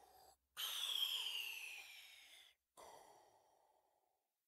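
Closing sounds of a recorded song: three separate sounds, each starting suddenly, sliding down in pitch and fading away, the last dying out near the end.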